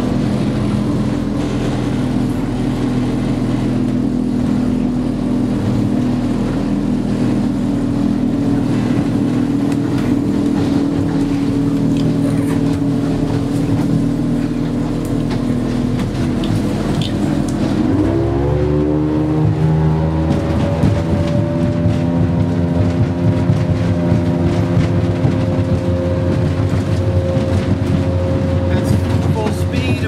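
Boat's outboard engine running under way at speed; about 18 seconds in its pitch rises quickly and then holds steady at a higher pitch, near 5,500 rpm.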